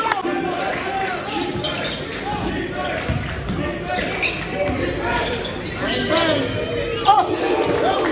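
Basketball being dribbled on a hardwood gym floor, sharp bounces repeating, with players' and spectators' voices in a large echoing hall.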